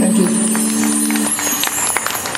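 A live band holding the final note of a song, voice and keyboard sustained, stopping about one and a half seconds in. Jingling, rattling percussion runs throughout.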